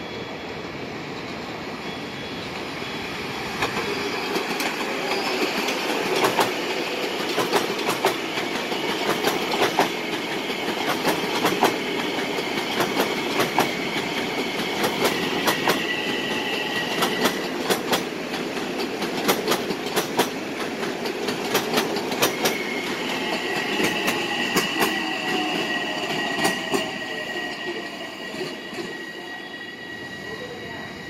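Long Island Rail Road electric multiple-unit train passing close through an interlocking, its wheels clicking over rail joints and switches. High-pitched wheel squeal sets in briefly near the middle and again for several seconds near the end.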